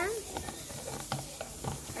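Stirring a runny glue-and-detergent slime mixture in a plastic cup with a thin stick: soft wet scraping with a few light clicks of the stick against the cup.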